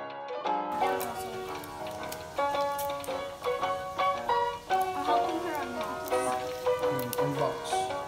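Light background music of short plucked notes in a steady, bouncy rhythm, with faint voices under it in the second half.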